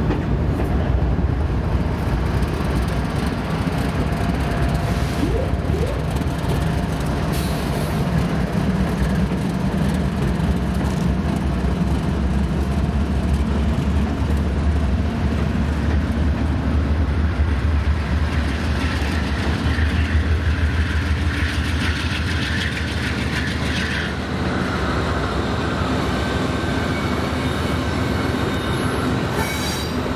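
A lashup of diesel-electric freight locomotives, a Union Pacific leader with BNSF units behind, rolling past with a steady, deep engine rumble that is heaviest through the middle. A thin, high wheel squeal joins about two-thirds of the way in.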